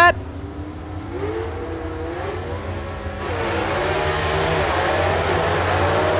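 Gasser drag cars launching off the starting line and accelerating away, engine sound growing louder from about three seconds in, its pitch rising and dipping over a steady low drone.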